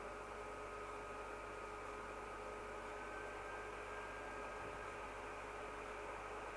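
Faint steady background hiss with a low electrical hum and a couple of thin steady tones: the recording's room tone and microphone noise.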